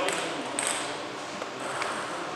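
Table tennis ball clicking against a bat or table, one sharp click about half a second in and fainter ones later, over the hall's background murmur.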